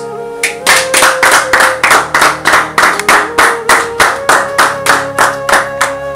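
Steady rhythmic hand clapping, about four claps a second, over soft sustained background music; the claps begin about half a second in and stop shortly before the end.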